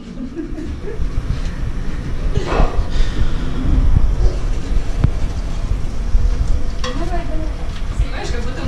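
A moving elevator car: a steady low rumble inside the steel cabin, with faint, muffled voices.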